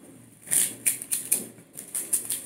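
Sheets of dried roasted seaweed (nori) crackling crisply as they are handled and bent. An irregular run of dry crackles begins about half a second in.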